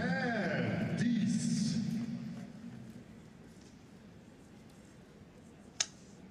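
Mostly speech: a man calling out arrow scores during the first couple of seconds, fading by about three seconds in. One sharp click comes near the end.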